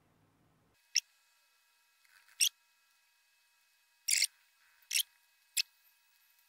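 Five sharp clicks from a laptop's controls, roughly a second apart, the third a quick double click, over a faint steady high tone.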